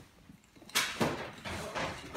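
Handling noises: a few short knocks and rustles as a glass is picked up from beside a leather sofa, the two loudest about three-quarters of a second and a second in.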